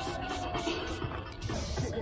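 Aerosol spray-paint can with a skinny cap hissing in short bursts broken by brief gaps as a thin outline is sprayed.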